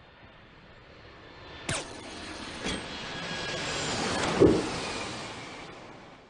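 Cartoon sound effect of something rushing past overhead: a noisy whoosh that swells over about four seconds, with a sharp crack near the start and a thump at its loudest, then fades away.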